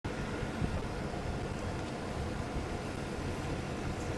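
Steady background noise through the microphone: a low rumble with a faint hiss, no speech.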